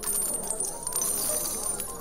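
Sound effect of revolver cartridges being emptied out, a dense run of small metallic clinks and jingles that stops suddenly.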